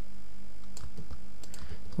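A few faint computer keyboard keystrokes, short separate clicks spread through the middle and later part, over a steady low electrical hum.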